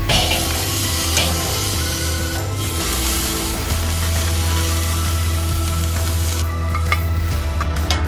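Beef rib steaks sizzling as tongs lay them on the hot grate of a charcoal kettle grill, over background music. The sizzle fades about six and a half seconds in.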